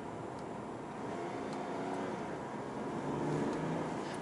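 2018 Mercedes CLS heard from inside the cabin, accelerating over tyre and road noise. The engine's pitch rises, drops back once about halfway through as the automatic shifts up a gear, then rises again.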